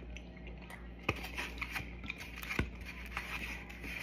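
Eating sounds: a fork clicking and scraping against a plate, with a sharp click about a second in and another past halfway, over a steady low hum.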